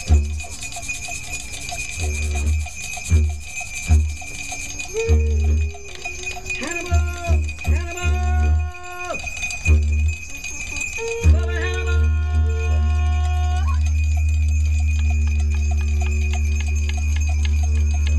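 Didgeridoo played in a chant: short pulsing drones in the first half, with higher calls that glide up in pitch over them. A little past the middle it settles into one long, continuous low drone.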